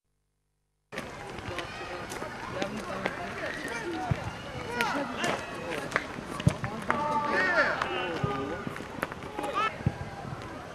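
Sound of a boys' football match on an outdoor pitch, beginning about a second in after a moment of silence: players shouting and calling to each other, with several sharp thuds of the ball being kicked.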